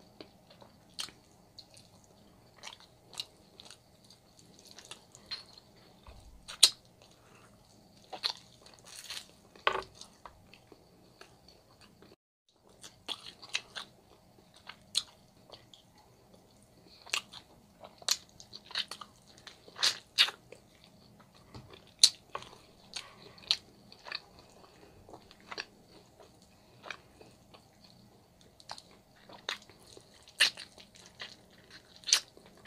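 Close-miked eating sounds of glazed ribs and oxtails taken by hand off the bone: irregular wet chewing and biting clicks and smacks. There is a brief gap of silence just after twelve seconds in, over a faint steady hum.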